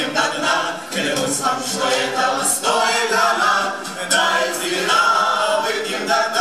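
A group of voices singing together, the chorus of a Russian drinking song, in full voice.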